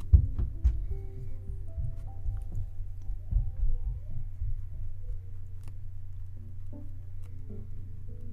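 Soft background music over a steady low hum, with a few dull knocks just after the start and again around three to four seconds in.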